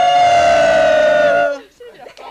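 A group of singers holding one long 'woo' together, the ghostly sound that ends a Halloween song. The note slides down and breaks off about one and a half seconds in.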